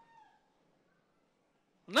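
A man's drawn-out shouts of "Now" over a microphone, each falling in pitch. The echo of one fades away in the first half second, then near silence, and the next shout begins at the very end.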